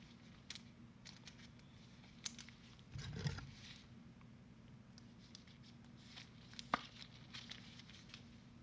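Faint handling noises from trading cards and their packaging: scattered light clicks, a brief rustle about three seconds in, and a sharper click near seven seconds.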